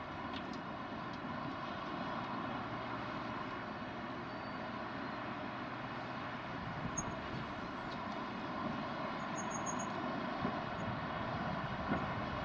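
Class 59 diesel locomotive's EMD two-stroke V16 engine running steadily as it hauls a train of hopper wagons slowly past, with a few light clicks in the second half.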